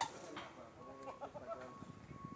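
A sharp click right at the start, then an indistinct person's voice calling out for about a second, over a faint steady high-pitched hum.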